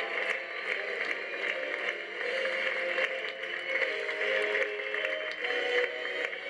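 A theatre audience applauding steadily while music plays, its melody running under the clapping.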